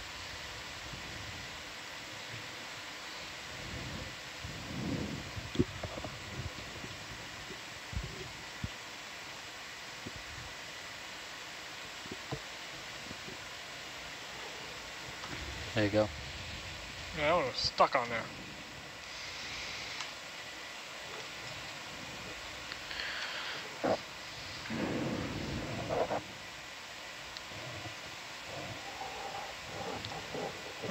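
Steady hiss of the control-room audio feed with scattered soft clicks, broken near the middle and again later by a few short stretches of low, indistinct speech.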